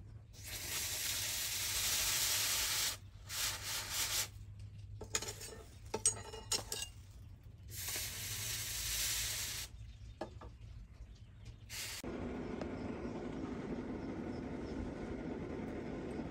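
Hot steel knife blade quenched in a water trough, hissing and sizzling in several bursts as it is dipped and lifted again. About twelve seconds in, this gives way to a steady low rumble.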